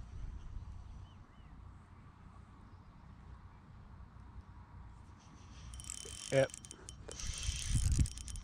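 Spinning reel (a Shimano Stradic 2500) working in the last two seconds as a fish takes the lure: a rapid run of fine mechanical clicking, loudest at the very end, after several seconds of faint wind rumble on the microphone.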